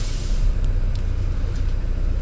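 Bus engine running with a steady low rumble, heard from inside the bus, with a short hiss of air in the first half second.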